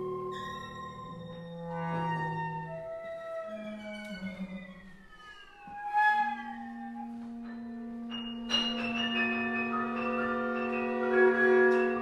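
Contemporary chamber ensemble playing, cello and winds with piano and percussion: sustained tones and slowly falling, sliding pitches, then a sharp accent about halfway through and a louder, many-voiced chord entering near the two-thirds mark.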